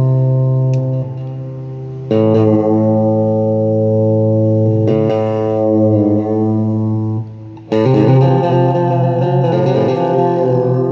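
Electric guitar played through a Gonk! fuzz pedal, a Clari(not) clone, ringing out sustained fuzzed chords. The chords are struck anew about two seconds in and again near eight seconds.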